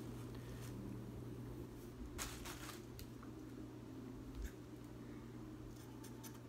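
A few short, sharp snips and rustles from scissors cutting synthetic wig hair into bangs, over a faint steady low hum.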